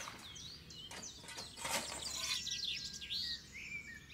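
Birds singing and chirping: many short, quick whistled chirps and trills over a faint low background hum.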